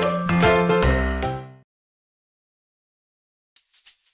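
Background music with bright chiming, jingling notes over a bass line, which stops about one and a half seconds in. Silence follows, and faint quick high ticks start near the end.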